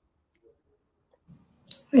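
Near silence in a pause between speakers, with a couple of faint clicks, then a woman starts speaking near the end.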